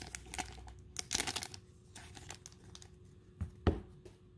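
Foil trading-card booster-pack wrapper crinkling and rustling as it is handled, with a denser burst of crinkling about a second in and a single louder thump near the end.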